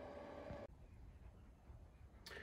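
Faint steady whine of the Elegoo Saturn S's Z-axis stepper motor driving the carriage along its freshly greased lead screw; it cuts off abruptly under a second in, leaving near silence.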